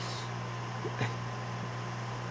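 Room tone: a steady low hum with a light hiss, and one soft tick about a second in.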